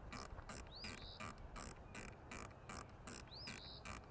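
Athlon Ares ETR riflescope elevation turret being dialed up in eighth-MOA clicks: a faint, steady run of about four to five clicks a second, taking out a point of impact that is far too low. A bird chirps twice, about a second in and again near the end.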